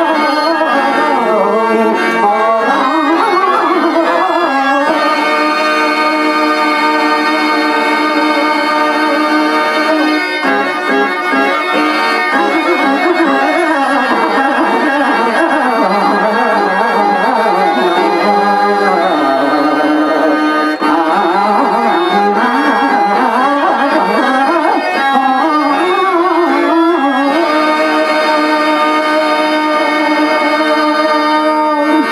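Harmonium playing held notes and winding melodic phrases, with tabla accompaniment: the instrumental stage music of a Telugu padya natakam.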